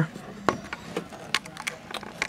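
Quiet room noise with a few light clicks and taps. The loudest comes about half a second in, with smaller ones after it.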